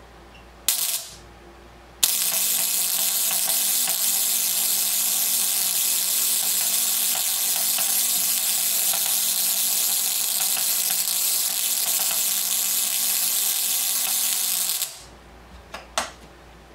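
Antique Edwards high-frequency coil running, its spark gap crackling in a loud, steady buzz with a low hum beneath. There is a brief burst about a second in; the steady sparking starts suddenly about two seconds in and cuts off shortly before the end.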